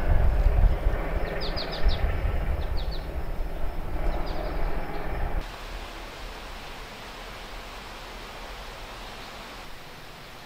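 Outdoor ambience: a low rumble with birds chirping in short quick runs of notes. About five seconds in it cuts to a quieter, steady outdoor background.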